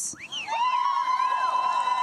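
Rally crowd cheering and whooping after an applause line, with one voice holding a long high whoop over the cheers from about half a second in.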